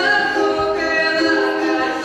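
Music for a stage dance: voices singing a cappella in a choir, holding long sustained notes that move from pitch to pitch.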